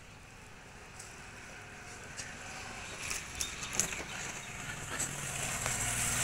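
Faint outdoor background noise that grows steadily louder, with a low steady hum coming in over the second half and a few faint clicks.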